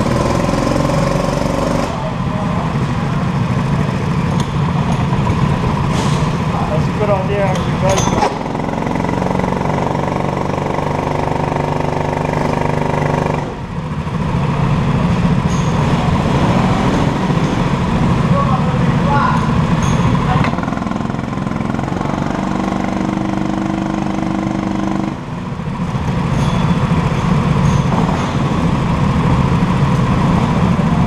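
Several rental go-kart petrol engines idling together in the pit lane. The steady drone shifts in pitch every few seconds as the engines' revs change, dipping briefly twice.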